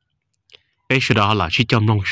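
A man's voice speaking, beginning about a second in after a silent pause.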